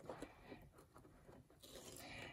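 Near silence, with faint brief rustling and scraping as fusible-backed appliqué fabric is handled and lifted off the cutting mat by hand.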